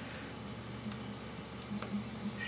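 Gas boiler with only its pilot flame lit, giving a low steady hum, with a faint tick about a second in and another near the end.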